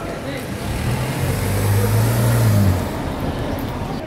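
A Mini car driving past close by: its engine and tyre noise swell to a peak about two seconds in, then fade.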